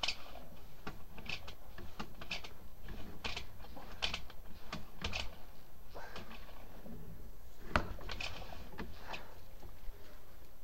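Sewer inspection camera's push cable being worked back and forth in the line: irregular clicks, rattles and short scrapes, with one sharp knock a little past three-quarters of the way through.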